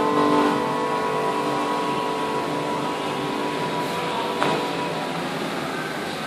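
Final sustained chord of a karaoke backing track dying away over the first second, leaving a steady hiss of room and speaker noise. A single short knock comes about four and a half seconds in.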